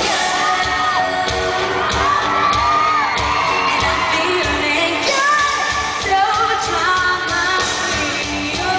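Live pop-rock band and singers performing, with sung lead and group vocals over guitars and a steady kick-drum beat of about two hits a second.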